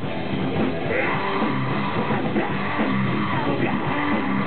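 Grindcore band playing live: loud, guitar-driven metal running steadily without a break.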